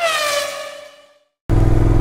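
An editing transition sound effect: a swish whose tones fall in pitch together and fade out over about a second, followed by a brief silence. Just past halfway the Suzuki Gladius 400's V-twin engine cuts back in, running steadily.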